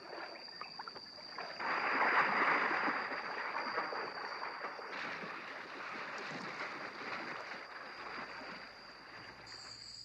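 River water churning and splashing as an estuarine crocodile lunges through the shallows. The rushing noise swells about a second and a half in and eases off near the end.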